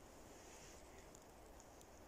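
Near silence: faint outdoor background hiss with a few tiny ticks.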